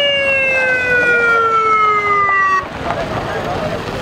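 Siren of a motorcade escort vehicle sounding one long wail that falls slowly in pitch and cuts off suddenly about two and a half seconds in. Voices follow.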